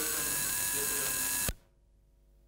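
Steady electrical hiss and buzz from the sound system or recording line, with a high, thin whine. It cuts off with a click about a second and a half in, leaving only a faint hum.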